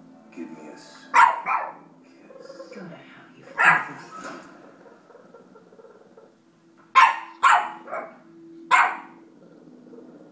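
Boston Terrier puppy barking in short sharp barks: a pair about a second in, one near four seconds, and a quick run of four from about seven to nine seconds in.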